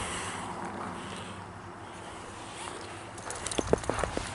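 Footsteps while walking, over a faint steady outdoor background, with a few sharp taps close together near the end.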